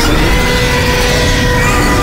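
Dramatic film score with long held notes over a loud, dense low rumble of sound effects.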